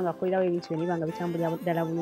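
Speech: a person talking steadily, in short, lively phrases.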